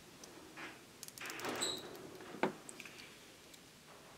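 Plastic cable tie rasping as it is pulled tight around a rolled metal-mesh electrode, with faint handling rustles and a sharp click about two and a half seconds in.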